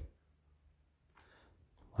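A single faint click about a second in, from the computer's mouse or keyboard during code editing, amid otherwise near silence.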